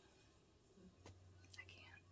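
Near silence: room tone with a faint click about a second in and a faint low hum after it.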